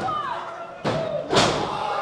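Two hand slaps on a wrestling ring's canvas mat, about half a second apart, the second the louder: a referee's two count on a pinfall.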